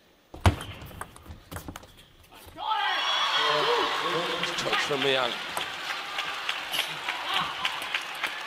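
Table tennis ball clicking off the bats and table in a short rally, the sharpest hit about half a second in. From about three seconds in, the arena crowd cheers and shouts loudly as the point is won.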